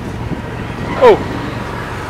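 Steady city street traffic noise, with a man's short spoken word about a second in.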